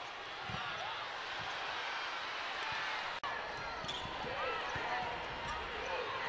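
Live basketball game sound on a hardwood court: a steady crowd murmur, a ball bouncing and short squeaks. There is a brief dropout about three seconds in.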